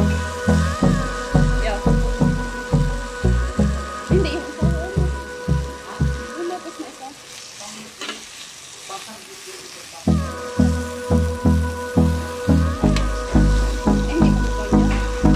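Glazed meat pieces sizzling on a grill pan as they are turned with metal tongs, under background music with a steady beat. The beat drops out for about four seconds in the middle, leaving the sizzle on its own.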